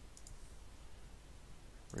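A few faint computer mouse clicks about a quarter second in, over a steady low background hum.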